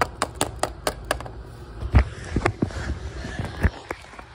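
A small plastic toy dog figurine tapped rapidly along a wood-grain floor to make it run, about eight quick clicks in the first second, followed by a few duller thumps of handling.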